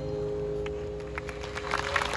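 The final chord of a choir's song with guitar and piano, held and slowly dying away. Scattered claps start about halfway through and build into audience applause near the end.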